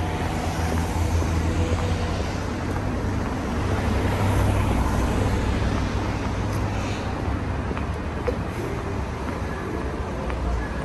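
Road traffic noise on a city street: a steady low rumble of vehicle engines.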